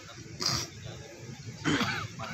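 Two short animal calls about a second apart, standing out over faint outdoor background.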